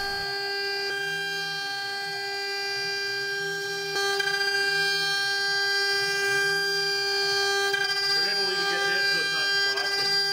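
A homemade CNC mill's spindle runs at full speed with a steady high whine and its overtones while the end mill cuts a metal dome under coolant. The cutting sound swells and fades about once a second as the tool circles the part, and it grows louder about four seconds in. The spindle has almost three thousandths of an inch of runout, the source of the chatter and poor surface finish in these cuts.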